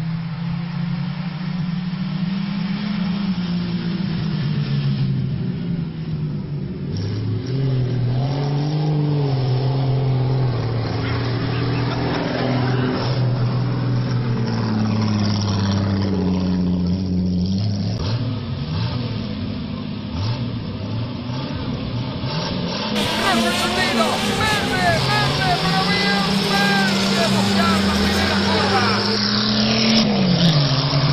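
Racing car engines revving hard on a dirt track, their pitch rising and falling as the cars accelerate and lift off. About three-quarters of the way through the sound turns louder and clearer, with several engines revving up and down at once.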